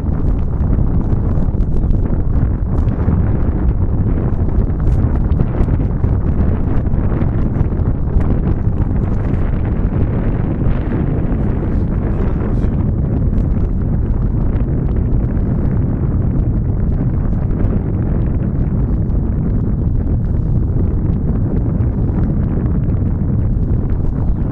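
Wind buffeting the camera microphone: a loud, steady low rumble throughout.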